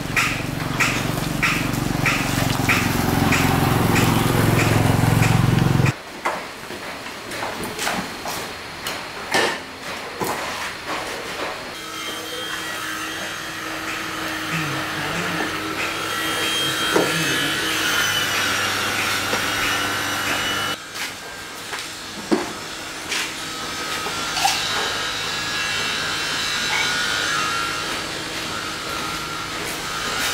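Hands-on work on a scooter in a repair workshop: scattered clicks and knocks of plastic body panels and parts being handled, over a steady machine hum. The opening seconds hold a louder low rumble with even ticking, about two a second, that stops abruptly.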